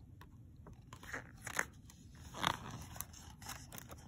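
A picture-book page being turned by hand: a few crisp paper crackles and rustles, the loudest about two and a half seconds in.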